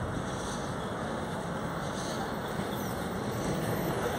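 City bus engine running as the bus approaches along the street, growing slightly louder towards the end, over a steady outdoor noise.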